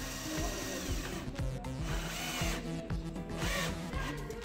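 Cordless drill working into wooden boards in short bursts, its whine rising as the motor spins up, over background music with a steady beat.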